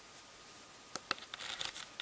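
Faint handling noise: a few light clicks and rustles, scattered from about a second in.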